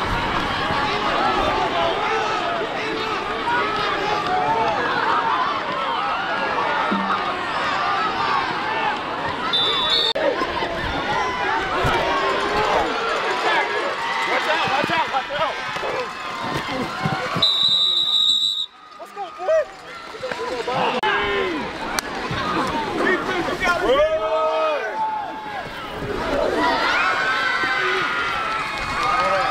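Crowd of football spectators talking and cheering, a dense babble of many voices. A whistle blows briefly about ten seconds in and again for about a second midway, and one loud shout stands out a few seconds before the end.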